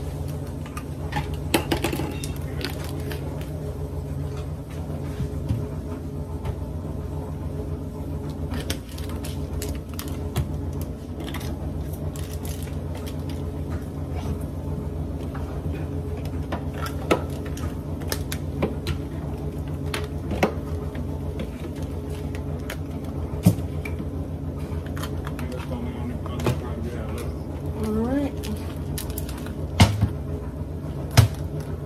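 Scattered small clicks and taps from spice shakers being opened and shaken and from ground meat being worked in a frying pan, over a steady low hum.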